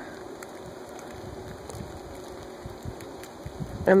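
Quiet outdoor snowfall ambience: a steady soft hiss with a few faint scattered ticks as big fluffy snowflakes fall and settle on a jacket sleeve.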